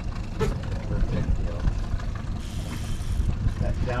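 Boat's small outboard kicker motor running steadily at trolling speed, a low rumble, with a man laughing about a second in and a brief hiss a little past the middle.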